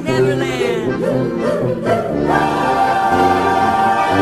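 A choir singing over an orchestral soundtrack; about two seconds in the voices settle into a long held chord.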